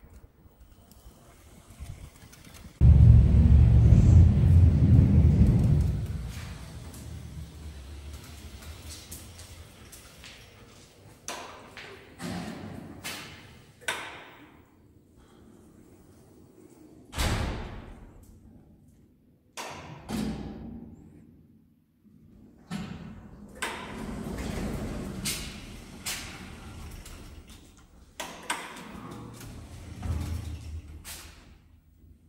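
Power wheelchair moving through a doorway and down a hallway into a lift. A loud low rumble a few seconds in fits the wheels crossing the door threshold. It is followed by a series of separate thumps and knocks, among them the lift's sliding doors opening.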